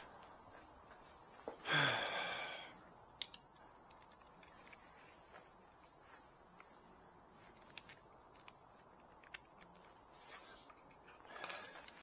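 Hand tools being handled: scattered light metallic clicks and taps. A person gives a short hum about two seconds in.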